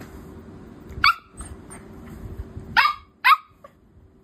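Puppy barking three times, short and high: one bark about a second in, then two close together near the end.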